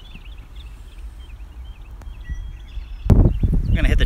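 Small birds chirping faintly in short, quick calls over a steady low outdoor rumble, with a light click about two seconds in.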